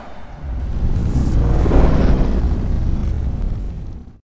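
Deep rumble of a logo-intro sound effect, swelling about half a second in and fading away near the end.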